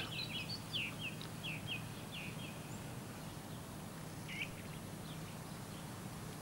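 A small bird singing: a quick run of short, high, falling chirps over the first two seconds or so, then one more chirp about four seconds in, over a faint low steady hum.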